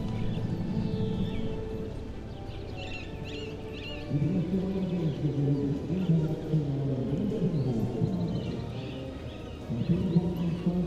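Dressage freestyle music playing, with a low melodic line that grows louder about four seconds in.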